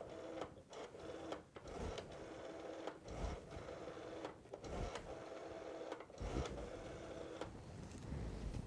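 Rotary telephone dial being turned and whirring back, one digit after another: several short runs of whirring with small clicks, separated by brief pauses.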